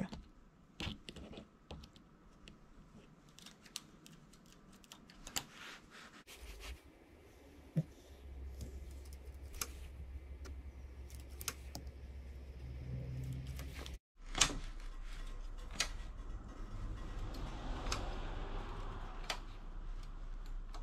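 Faint scattered clicks and light rustles of hands working a domestic knitting machine: a transfer tool picking up a stitch and placing it on the metal latch needles, and wool knitting being pressed and handled. A low steady hum runs under it from about a third of the way in.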